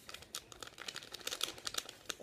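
A small blue plastic powder packet from a Popin' Cookin' candy kit crinkling in the hand as it is held up and handled: a quick, irregular run of faint crackles.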